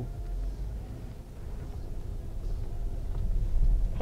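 Inside the cabin of a 2016 Mercedes-Benz GL550 pulling away at low speed: a low rumble from its 4.7-litre twin-turbo V8, growing gradually louder toward the end.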